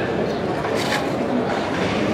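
Indistinct voices of people talking over a steady, noisy background, with a brief hiss about halfway through.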